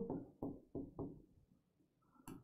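A few faint knocks of a writing tool against a board as a short formula is written, about four short taps in the first second or so, then quiet.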